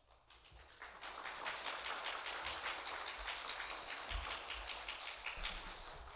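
Audience applauding, many hands clapping; it starts about a second in and tapers off near the end.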